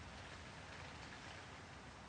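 Near silence: a faint, steady hiss of background noise with no distinct events.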